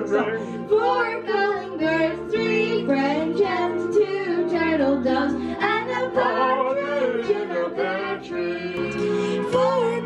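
A girl singing karaoke into a microphone over a backing track of steady instrumental chords.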